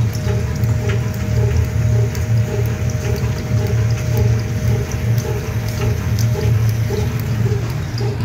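Engine-driven mustard-oil expeller press running steadily: a loud low hum with a regular beat about twice a second while it presses mustard seed.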